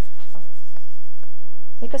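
A marker pen scribbling over a prop phone in short, faint scratching strokes.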